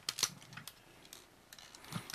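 Plastic panels and parts of a Transformers Dark of the Moon Sentinel Prime figure giving a few light, scattered clicks and taps as hands align and fit them.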